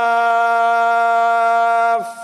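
A man's voice in melodic Quranic recitation in Arabic, holding one long, steady note at the end of a phrase. The note stops near the end.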